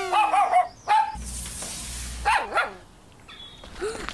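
Cartoon dog barking: several short, arching barks, with a rushing noise about a second in.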